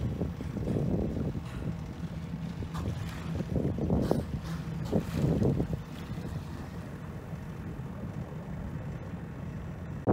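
A boat's engine hums steadily under wind and water noise, with a few short rushes of noise around one, four and five seconds in.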